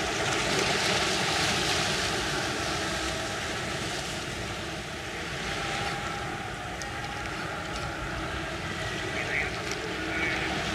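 Steady wash of small sea waves against rocks and shore, with wind on the microphone, a little louder in the first couple of seconds.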